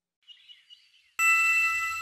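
A faint high twinkle, then about a second in a bright bell-like ding that rings on and slowly fades: a cartoon chime sound effect.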